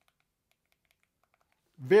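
Very faint, repeated clicks of an iPhone 14 Pro Max's volume buttons being pressed through the hard Rhinoshield clear case's button covers, tactile clicks with no mushiness.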